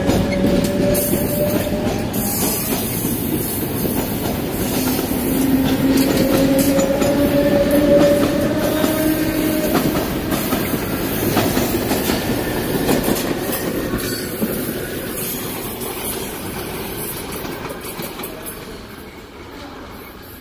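SuperVia series 700 electric multiple unit pulling out of the station: a whine that rises slowly in pitch as it gains speed, over the rumble and clickety-clack of its wheels on the rails. The sound fades away over the last few seconds as the train leaves.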